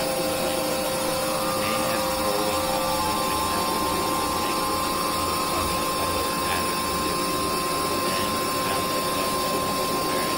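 Experimental electronic noise-drone music: a dense, steady wash of noise with held tones over a regular low pulse. About three seconds in, the lower held tone gives way to a higher one.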